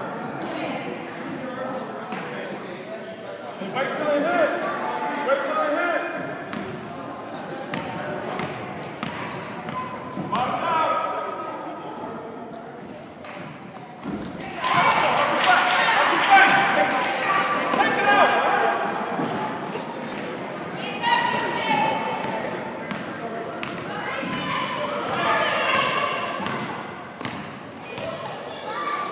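A basketball bouncing on a gym floor in a game, short sharp knocks that echo in the large hall, with players and spectators shouting over them. The voices are loudest about halfway through.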